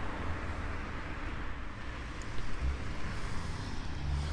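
Steady low rumble and hiss of a car's road and engine noise at low speed.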